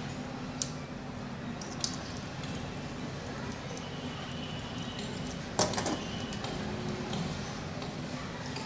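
Light clicks and taps of a screwdriver working on a plastic push-button switch's terminal screws, with a louder short clatter of several knocks about five and a half seconds in as the switch is handled on the wooden bench. A steady low hum runs underneath.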